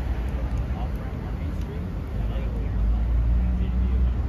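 Faint, indistinct voices over a steady low rumble that grows louder near the end.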